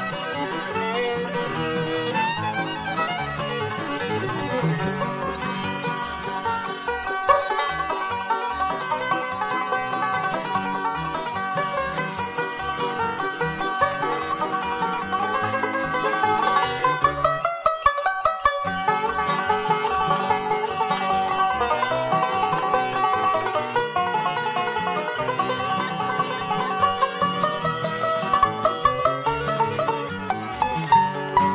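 Live bluegrass band playing an instrumental, a five-string banjo taking the lead over fiddle, guitar and upright bass fiddle keeping an even beat.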